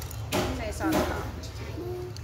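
Children's voices: short bits of speech about a third of a second in and again around one second, with a sharp knock near the start, over a steady low hum.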